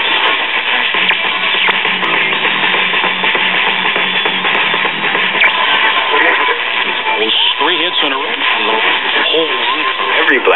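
A 1939 Zenith 4K331 battery tube radio playing a broadcast station through its speaker: guitar-backed music, with a voice coming in over it from about six seconds in.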